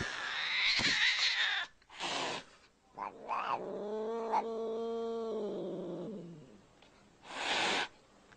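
Domestic cat hissing and yowling: short hisses, then a drawn-out yowl of about three seconds in the middle that sags in pitch as it ends, then another brief hiss near the end.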